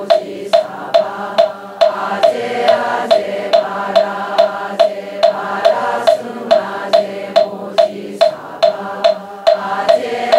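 A moktak (Korean Buddhist wooden fish) struck in a steady beat about twice a second, each knock short and hollow, while a congregation chants in unison to its beat.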